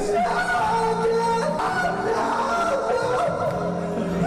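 A man singing karaoke into a microphone over a backing track, holding long notes.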